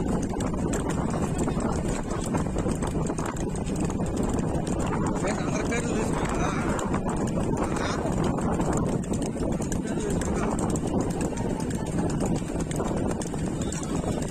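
A pair of racing bulls galloping on a paved road, hooves clattering steadily as they pull a flatbed bullock cart, with voices shouting over the top.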